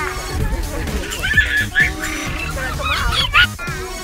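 A small child squealing with laughter, a few high squeals, over background music.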